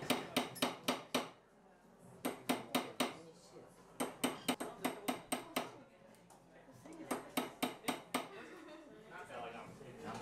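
A small hammer tapping a metal ring on a steel ring mandrel, shaping it by hand. The bright metallic strikes come in four quick bursts of five to seven taps, about five a second, with short pauses between.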